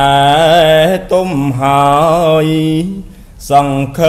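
A Buddhist monk chanting Khmer smot, a solo male voice holding long notes with wavering ornaments on them. The phrases break off briefly about a second in and again just after three seconds.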